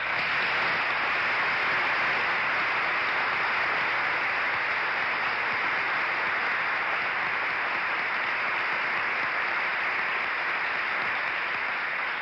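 A large audience applauding, a dense, steady clatter of many hands that sets in at once and tails off near the end.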